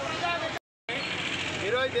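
Speech over steady background noise, broken by a sudden moment of dead silence about half a second in at an edit cut; then a man begins speaking.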